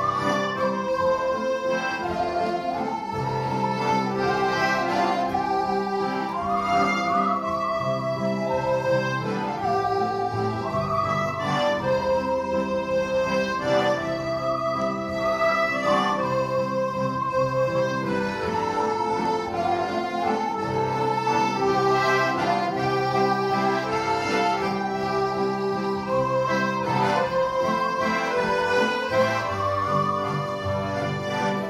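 Musical saw playing a slow melody, its notes sliding into one another with a wide wavering vibrato, over steady sustained chords from button accordions.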